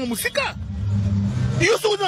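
A woman's voice chanting a repeated word, breaking off for about a second in the middle. Under it runs a steady low hum from a vehicle engine, heard plainly in the pause.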